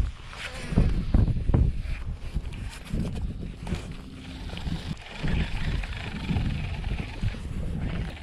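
Gusty wind buffeting the microphone in uneven low rumbles, with a few short knocks in the first two seconds.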